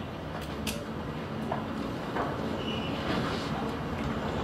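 Steady low room rumble and hiss with a few short clicks and knocks, the sharpest about half a second in.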